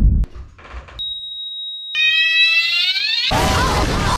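A heart monitor's single steady high beep, the flatline tone, holds for about a second. A cat then gives a drawn-out, rising yowl, cut off near the end by a loud noisy crash-like burst.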